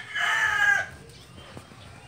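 Rooster crowing: the drawn-out end of a crow that stops about a second in.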